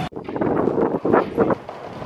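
Wind buffeting the microphone outdoors, in uneven gusts.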